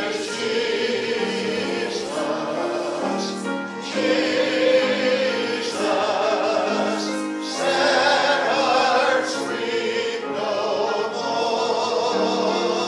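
A hymn sung with instrumental accompaniment, in slow phrases of held notes.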